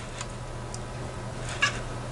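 A few faint clicks and one short squeak from a Traxxas TRX-4 crawler's front suspension and linkage as the wheel is pushed up by hand to work the axle through its travel, over a steady low hum.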